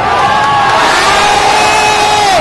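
A large stadium crowd of football supporters cheering loudly. A long held note carries over the din and slides down in pitch right at the end.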